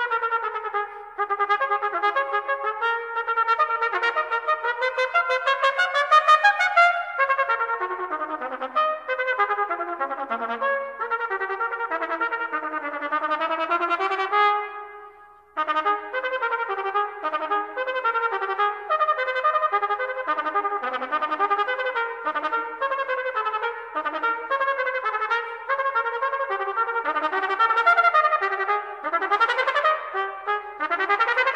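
Unaccompanied B-flat trumpet playing fast, triple-tongued staccato runs. There is a short break about halfway through before the runs resume.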